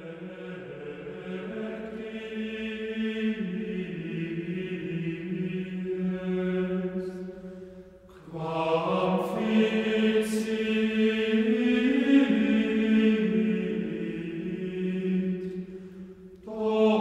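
Slow sung chant, a single melodic line held on long notes that move step by step. One phrase fades out a little before the middle, and a louder phrase begins just after.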